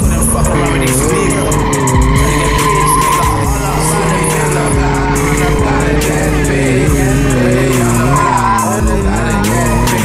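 Sport motorcycle drifting on asphalt: the engine held at high revs while the rear tyre skids and squeals, its pitch wavering up and down, with music underneath.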